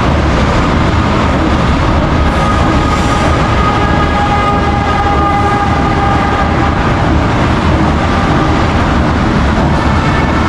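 A train at the station, a loud steady rumble with a whine of several pitches heard over it from about two to seven seconds in.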